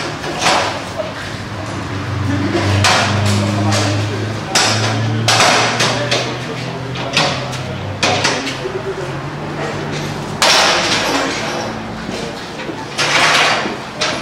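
Wooden festival benches and tables with folding metal legs being carried, set down and shifted on cobblestones: about eight separate knocks and short scrapes a second or two apart, with people talking.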